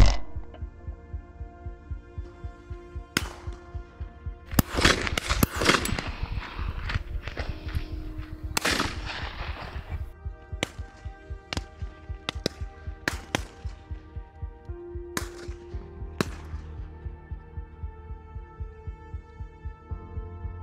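Shotgun shots at driven game birds, about a dozen sharp cracks, the loudest right at the start and several in quick succession a few seconds in, over background music with sustained chords and a slow, steady pulsing beat like a heartbeat.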